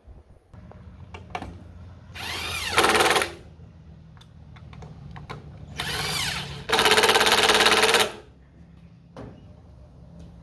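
DeWalt cordless driver running screws into a wooden planter box in two bursts: a short one about two seconds in, its motor pitch rising as it spins up, then a longer, louder run from about six to eight seconds as a screw is driven home.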